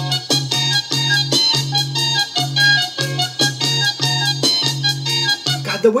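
Symphonic prog rock recording playing: keyboards and a pipey synth over a repeating bass line with a jerky, evenly accented rhythm. A man's voice starts talking right at the end.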